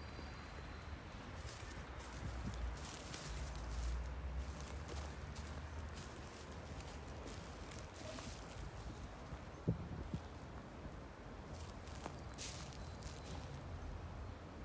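Footsteps crunching over dry leaf litter at an irregular walking pace, with a single sharp knock a little before ten seconds in. A low rumble sits on the microphone throughout.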